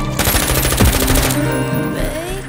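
A rapid burst of automatic gunfire from a film trailer's soundtrack, lasting about a second, over sustained dramatic music.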